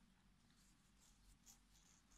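Near silence: room tone with faint soft rustles of yarn being worked on a metal crochet hook, one slightly louder about one and a half seconds in.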